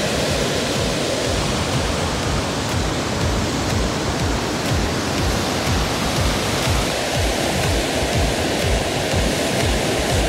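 Steady rush of river water pouring over a weir, with an uneven low rumble underneath.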